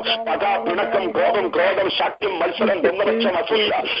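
Speech: a voice praying aloud over a telephone prayer line, narrow in sound, with a steady low tone held underneath for about the first second and a half.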